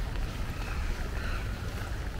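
Wind buffeting the microphone: a steady, uneven low rumble over a faint hiss of outdoor ambience.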